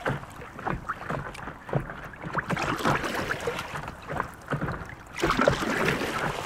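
Lake water lapping and splashing irregularly in short slaps, with a louder stretch near the end.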